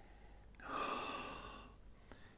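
One long sniff through the nose at a glass of tequila, nosing its aroma; it swells about half a second in and fades away over about a second.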